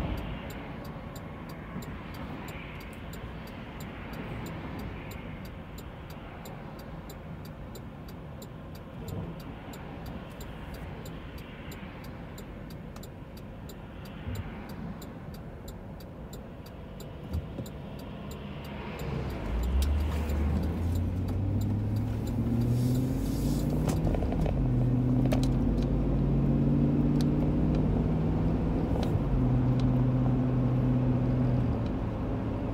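Road noise and engine rumble inside a moving car's cabin. From about two-thirds of the way through, louder low steady tones join, stepping up in pitch and then holding.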